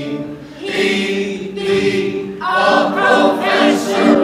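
Voices singing together in a sung musical number, holding long notes, with a new phrase coming in about two and a half seconds in.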